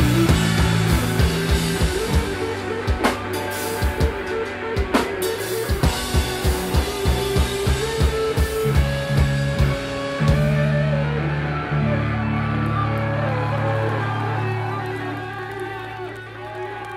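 Live rock band playing an instrumental passage on drums, distorted electric guitars and bass guitar. After about ten seconds the drumming mostly drops away, leaving held guitar and bass chords that ring out and fade near the end.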